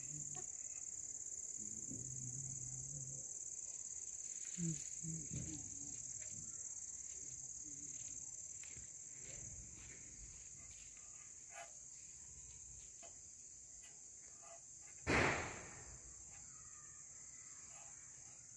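Crickets chirring steadily in a high, unbroken band, with one loud thump about 15 seconds in.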